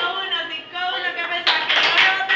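Voices talking, then a short burst of sharp hand claps about one and a half seconds in.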